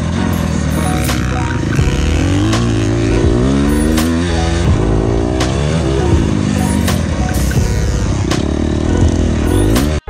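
Honda CRF250R single-cylinder four-stroke dirt-bike engine revving up and down repeatedly as it accelerates and shifts around the track, with music playing over it.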